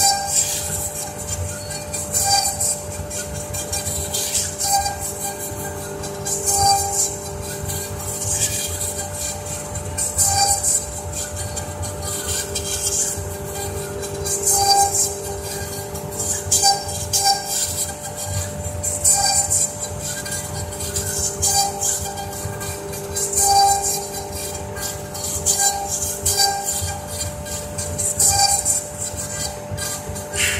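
Two spindles of a double-head CNC router running together and cutting into a wooden board: a steady whine with a hiss of cutting that swells and fades about every two seconds as the bits move through the wood.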